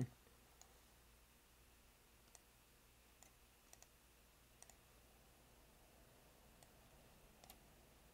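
Near silence: room tone with about eight faint, scattered clicks of a computer mouse.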